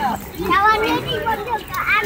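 Young children's voices chattering and calling out, with no clear words.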